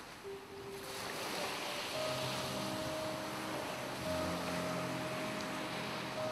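Sea waves washing, a noise that swells up over the first second and then holds steady, under soft music of long held notes that come in about two seconds in.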